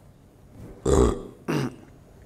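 A man's two short throat sounds, not words: a rough one about a second in and a shorter one half a second later.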